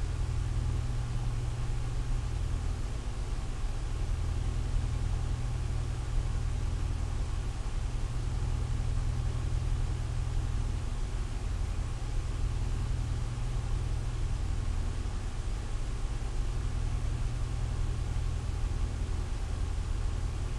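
A steady low hum with a faint hiss over it, unchanging for the whole stretch.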